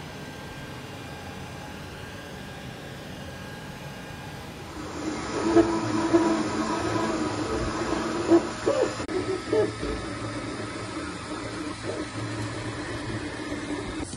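A 3D printer running: its motors whine in shifting pitches as the print head moves, with scattered clicks. It starts about five seconds in, after a stretch of faint steady hiss.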